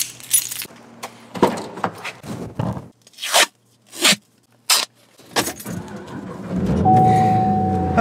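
Keys and small clicks, then several quick swishes of a car seatbelt being pulled out, then a car engine starts about six and a half seconds in and settles into a steady idle, with a single held chime tone over it near the end.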